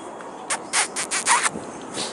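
A few short rustling, rubbing noises packed into about a second near the middle: handling noise of the camera and clothing as the camera is swung about.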